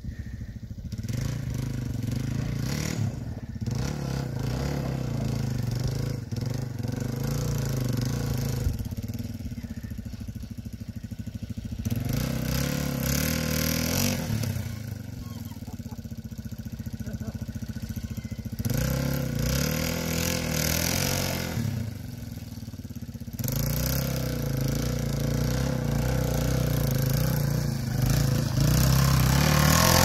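Yamaha dual-sport motorcycle engine running on a rough dirt trail, its note rising and falling with the throttle. It gets louder as the bike comes close near the end.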